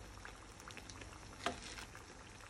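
Hot oil sizzling and crackling softly in a pan around a pastry-wrapped parcel being shallow-fried, with one louder tap about halfway through.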